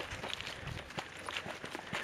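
Footsteps on grassy ground covered in dry leaf litter: faint, irregular steps of someone walking briskly.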